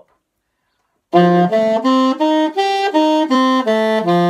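Alto saxophone playing a D9 arpeggio (D, F#, A, C, E as written for the sax) in short, even notes. It climbs to the E and comes back down to the bottom, starting about a second in after a silence.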